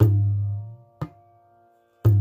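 Tabla bass drum (bayan) struck with an open, ringing hand stroke: a deep boom that dies away over about a second. About a second in comes a short, dry, tight stroke, and a second open boom lands at the very end.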